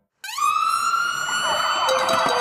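Ambulance siren starting up: after a brief silence, a wailing tone rises quickly in pitch and then holds steady.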